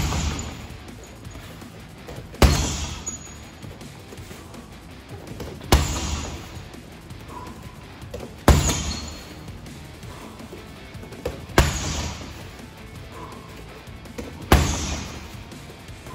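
Strikes landing on a hanging heavy bag, the first a round kick: six heavy thuds about three seconds apart, each trailing off in a short echo.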